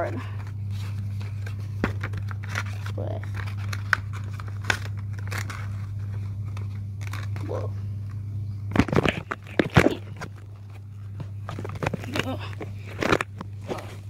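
Paper crinkling and rustling as a folded paper dragon puppet is handled, with scattered clicks and louder bursts about nine seconds in and again near twelve seconds. A steady low hum runs underneath.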